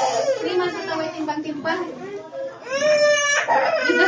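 Infant crying during an immunization jab, with one long wail about three seconds in.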